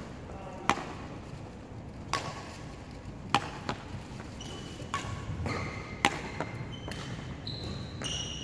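Badminton rackets striking a shuttlecock back and forth in a rally: sharp clicks every second or so, the nearer strokes louder and the far player's returns fainter. Short high squeaks of court shoes on the wooden floor join in the second half.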